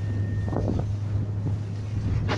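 Speedboat motor running with a steady low drone under the bow, with wind buffeting the microphone.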